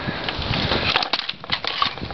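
Handling noise near the microphone: a rustling hiss, then about a second in a run of small clicks and knocks.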